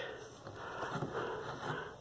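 Faint, steady background noise with no distinct event.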